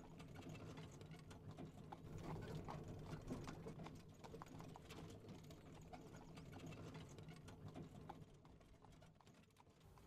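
Faint horse-drawn carriage ambience: horse hooves clip-clopping in an irregular patter of small clicks over a low steady rumble. It starts suddenly, is loudest a couple of seconds in, and thins out toward the end.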